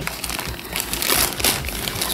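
Clear plastic bag crinkling and crackling as hands rummage through it and pull out the school supplies packed inside.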